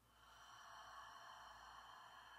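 A slow, steady out-breath through the mouth, faint and lasting about three seconds, with a thin whistling edge, taken as the exhale of a guided yoga breathing exercise.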